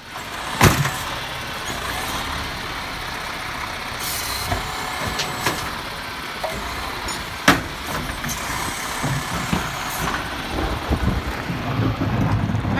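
Garbage truck with an automated side-loader arm running while the arm lifts and tips carts into the hopper. The engine and hydraulics run steadily, broken by sharp knocks of the cart and arm. The two loudest bangs come just after the start and past the middle, when the cart is dumped, with lighter clunks between.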